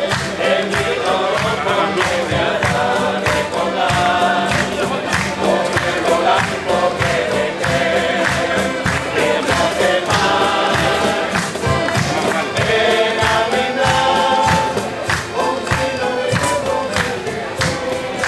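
Canarian parranda folk group playing and singing: several voices singing together in a steady rhythm over strummed guitars and other plucked string instruments, with accordion and conga drums.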